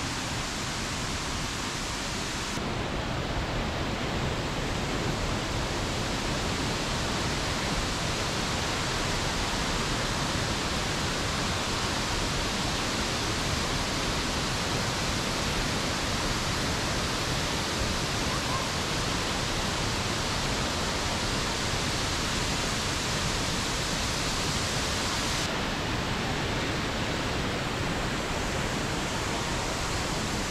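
Tortum Waterfall's falling water rushing in a steady, even din with no pauses. The balance of the sound shifts slightly about three seconds in and again a few seconds before the end.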